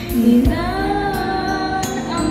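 A young girl singing a Tagalog praise song solo over instrumental accompaniment, holding sustained sung notes.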